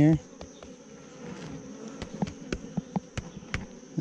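Honeybees humming steadily around an open nuc hive, with a few light clicks scattered through it.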